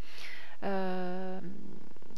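A woman's voice: a breath in, then a long, flat, held "euh" hesitation lasting under a second.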